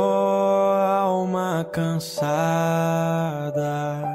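A hymn sung slowly, the voice holding long, drawn-out notes and sliding between them, with a short break and a sibilant about two seconds in.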